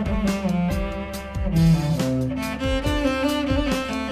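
Music: a bowed cello playing a melody of sustained notes over a backing track with percussion hits.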